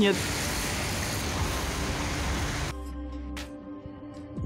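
Steady rushing wind noise on the microphone for about two and a half seconds. It cuts off abruptly into soft background music with held tones.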